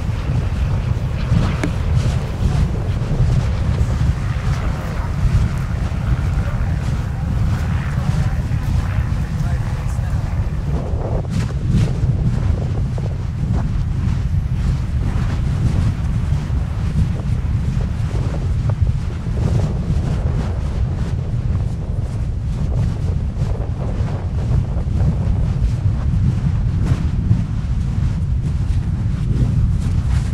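Lava fountains along an erupting basaltic fissure: a steady deep rumble with frequent sharp pops and cracks from bursting spatter. Wind buffets the microphone.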